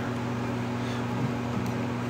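A steady low hum with a faint hiss, even in level throughout, with no strumming or singing.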